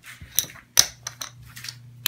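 Poker chips clicking against each other as a hand picks up and handles a small stack: two sharp clacks, then a few lighter clicks.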